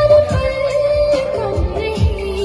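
A woman singing a Hindi film song into a microphone over a backing track with a steady beat; she holds one long note, then drops to a lower one near the end.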